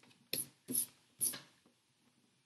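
Three short scratchy rubbing strokes on drawing paper, about half a second apart, from pencil, eraser or hand working the sketch.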